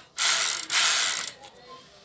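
Multi-speed bicycle freewheel spun by hand, its pawls clicking fast enough to make a ratcheting buzz. There are two spins about half a second each, the second a little longer.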